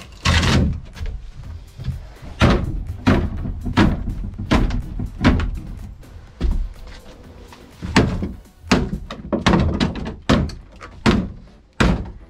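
Crowbar striking and levering at a wooden boat stringer to break its end off: a run of irregular hard knocks and cracking wood, some blows much louder than others.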